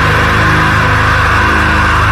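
Metalcore band recording, no vocals: heavily distorted guitars sustaining a dense wall of sound over a fast, even low drum pulse.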